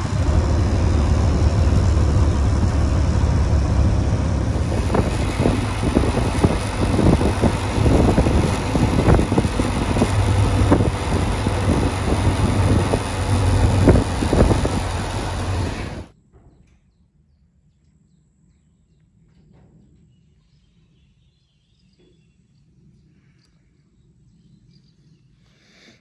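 Benelli TRK 502X motorcycle riding at speed: heavy wind buffeting on the bike-mounted camera microphone over engine and road noise. It cuts off suddenly about 16 seconds in, leaving a much quieter faint low hum.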